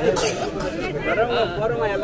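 Several men's voices talking over one another, close by.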